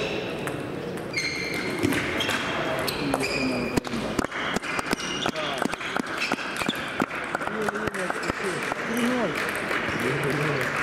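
Table tennis rally: the ball clicking quickly back and forth off the paddles and the table, densest from about three to eight seconds in, over background voices.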